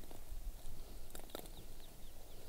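Loose dry soil crumbled between the fingers and dropped over a set claw mole trap's hole, giving a few light patters and small rustling clicks.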